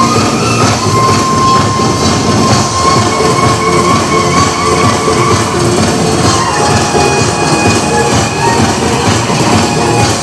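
Loud Korean traditional percussion music for a sogo hand-drum dance: dense, clattering drum and metal percussion strokes, with a long held high note from about one to five seconds in.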